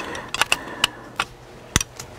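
Screwdriver and a seat belt retractor's metal and plastic housing being handled, making several sharp clicks and taps, the loudest shortly before the end, as the screwdriver tip is set onto the retractor's screws.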